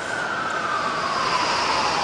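Police car siren wailing, its pitch sliding slowly downward in one long sweep.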